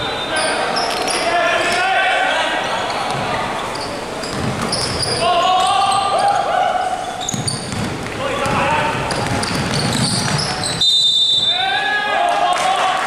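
Indoor basketball game on a wooden court: players' voices calling and shouting, echoing in a large hall, with a ball bouncing and scattered knocks. A brief steady high tone sounds near the end.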